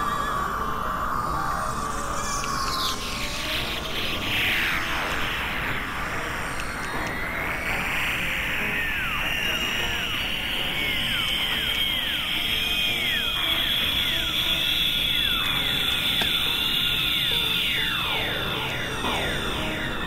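Experimental electronic music over a steady noisy bed. A few seconds in comes a cluster of falling pitch sweeps. Then a tone rises and holds high, with a long run of repeated rising-and-falling chirps beneath it until near the end.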